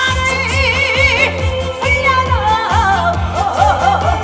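A woman singing a trot medley live into a microphone, her voice wavering with a strong vibrato, over loud amplified band backing with a steady beat.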